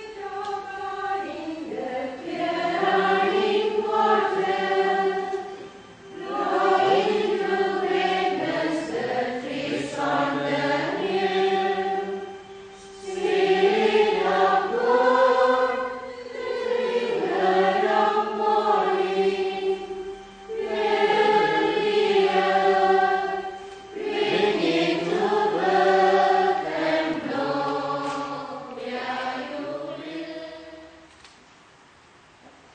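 A choir singing a sacred song in long phrases, with short breaks between them.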